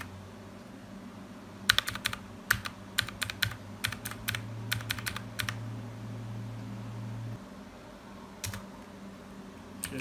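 Keys of a backlit gaming keyboard clicking in quick bursts as the F2 key is pressed over and over at boot to get into the BIOS. One last click comes near the end, over a low steady hum that stops about seven seconds in.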